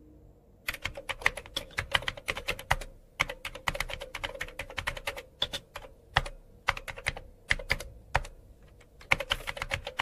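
Typing on an Apple MacBook laptop keyboard: rapid, uneven key clicks that start about a second in, with a few brief pauses between bursts.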